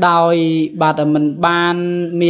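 A man's voice in drawn-out, evenly pitched syllables that sound chant-like, in two long stretches with a short break between them.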